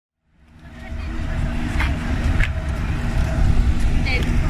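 Outdoor background rumble fading in over about the first second, then steady, with a faint constant hum and a couple of brief faint clicks.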